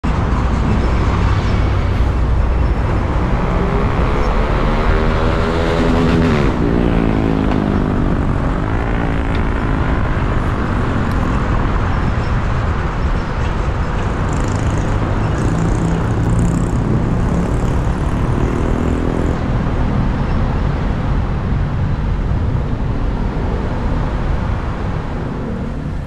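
Steady road traffic noise, with a passing vehicle's engine rising and falling in pitch about four to ten seconds in and another passing near nineteen seconds.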